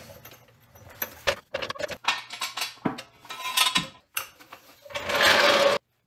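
Hydraulic floor jack being worked under the car: a run of irregular clicks and metal knocks. Near the end comes a louder noisy burst, under a second long, that cuts off suddenly.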